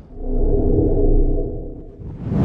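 Logo intro sound effect: a deep rumbling hit carrying a steady ringing tone above it, swelling in over about half a second and then slowly fading.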